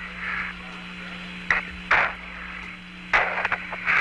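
Apollo 14 air-to-ground radio channel: a steady low hum and hiss, broken by several short bursts of noise on the open link, once near the start, twice around a second and a half to two seconds in, and again for most of the last second.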